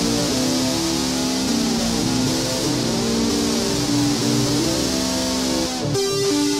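Electric guitar (Les Paul–style) played through a Behringer UM300 Ultra Metal distortion pedal: a melody line of long, heavily distorted sustained notes, with a short break near the end.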